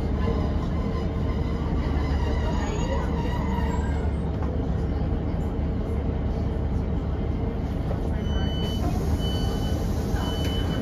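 Northern Class 150 diesel multiple unit standing at a station with its underfloor diesel engine idling, a steady low hum heard from inside the carriage. From about eight seconds in, a high electronic beep starts repeating about once a second.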